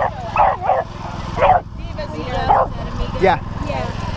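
A beagle barking and yelping in a series of about six short, excited calls while it waits to chase the lure.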